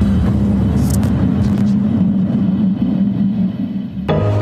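A loud, steady, deep rumbling drone with a low hum, holding level throughout, with a brief airy hiss about a second in.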